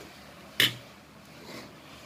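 A single sharp clink a little over half a second in: a metal fork knocking against a ceramic bowl of flour.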